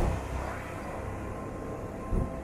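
Electric rack railcar of the Pilatus Railway running, heard from aboard as a steady low rumble, with a sharp knock right at the start.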